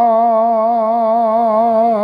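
A man's voice chanting a Sanskrit Vaishnava invocation prayer, drawing out the word "Rādhā" on one long sung note with an even vibrato.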